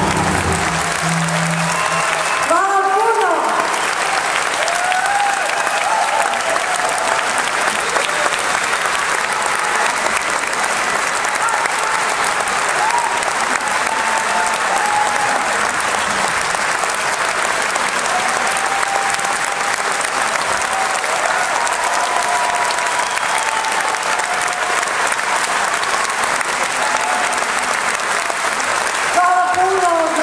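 A concert audience applauding steadily, with voices calling and cheering over the clapping. The last sustained note of the music dies away in the first second or two.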